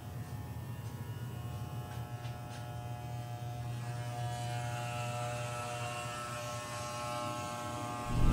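Corded electric hair clippers running with a steady buzz as they cut the hair on a man's head.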